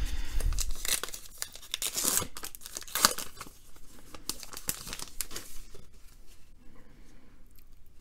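Trading card pack wrapper being torn open and crinkled in the hands as the cards are pulled out: dense, irregular crackling for the first few seconds, thinning to occasional crinkles after about five seconds.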